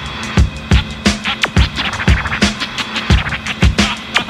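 Hip hop track with a steady boom-bap drum beat and turntable scratching over it, with no rapping.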